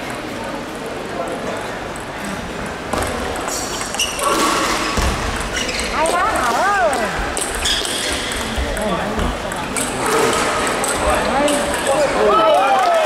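Table tennis rally: a celluloid-type ball clicking back and forth off paddles and table, with voices chattering in the hall behind.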